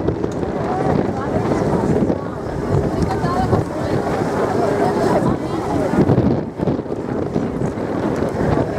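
A moored ferry's engine running steadily under indistinct chatter of people nearby, with wind buffeting the microphone.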